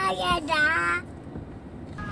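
A toddler's happy, high-pitched vocalising: two drawn-out, wavering cries in about the first second, then it stops.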